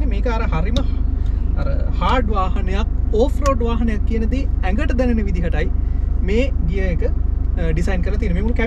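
Mostly a man talking; beneath the voice, a steady low rumble of the Mitsubishi Pajero's engine heard from inside the cabin.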